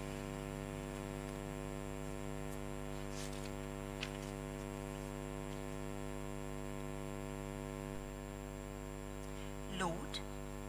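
Steady electrical mains hum with a buzzy stack of overtones, a faint click about four seconds in.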